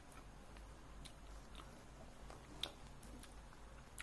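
Faint, close chewing of a mouthful of fried rice, with soft scattered clicks and one sharper click about two and a half seconds in.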